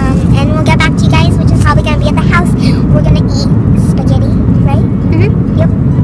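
Steady low rumble of a car heard from inside the cabin, with a girl's voice talking over it in short phrases throughout.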